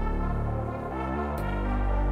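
Improvised electronic music played live on a keyboard-controlled synthesizer: sustained synth chords over a deep bass, with the chord changing about a second in.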